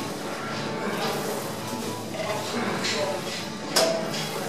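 Gym background sound: music playing with indistinct voices, and a single sharp knock near the end.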